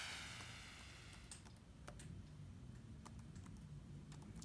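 Laptop keyboard keys pressed one at a time, faint separate clicks about two or three a second, on a Lenovo Yoga 730-15 being typed across its letter keys to test for keys that do not register. The tail of a whoosh fades out in the first second.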